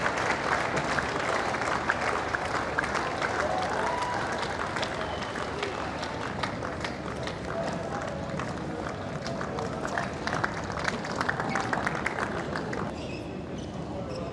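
Tennis crowd applauding the end of the match: dense, steady clapping with some voices among the spectators. It drops away about a second before the end.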